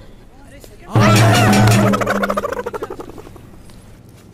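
Film soundtrack: about a second in, a sudden loud voice-like cry over a low held tone, which trails off in a fast fluttering pulse that fades away.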